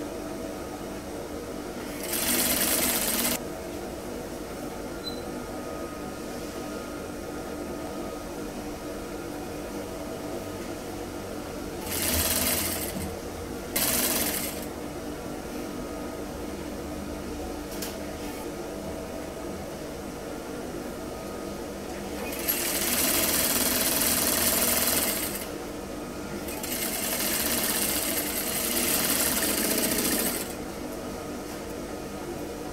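Industrial single-needle lockstitch sewing machine stitching a long garment seam in short runs, its motor humming steadily between them. The louder stitching comes five times: briefly about two seconds in, twice close together around twelve to fourteen seconds, and in two longer runs of about three seconds near the end.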